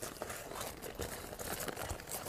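A few faint clicks and light knocks against low background noise, from the parts of an old hand corn mill being handled and set in place.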